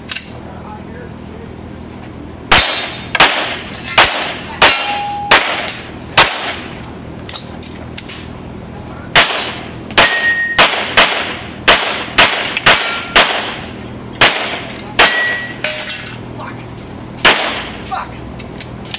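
Rapid semi-automatic pistol fire in two strings: about six shots a few seconds in, a pause of about three seconds, then a quick run of about a dozen shots, with one last shot near the end. A few of the shots are followed by a short metallic ring, typical of hits on steel targets.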